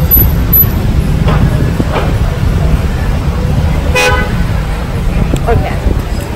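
Wind buffeting the microphone over street traffic, a steady low rumble. About four seconds in, a vehicle horn gives one short toot.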